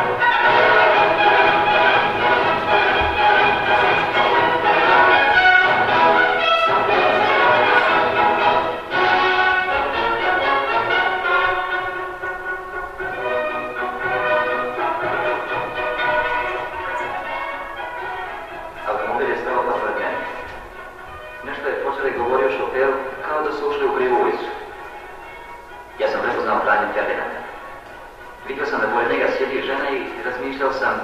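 Film soundtrack music, dense and loud for the first dozen seconds, then quieter and broken up, with voices coming through in short bursts in the second half.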